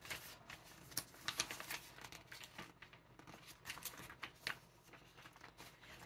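Faint rustling and crinkling of snack packets being handled and sorted through, with scattered light crackles.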